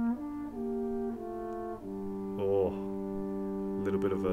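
Drum corps marching brass, mellophone at the front, playing a slow passage of held notes. The pitch steps to a new note every half second to a second, and more voices join after about two seconds to build a sustained chord.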